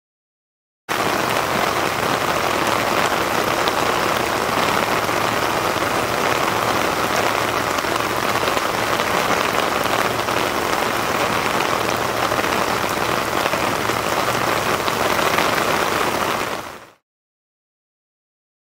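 Heavy rain falling on a river's surface, a dense, steady hiss. It cuts in suddenly about a second in and fades out about a second before the end.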